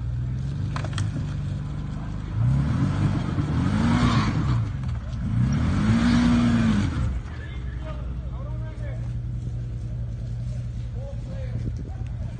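Side-by-side UTV engine idling, then revved twice as the machine climbs a rock ledge. Each rev rises and falls in pitch over about two seconds before the engine settles back to idle.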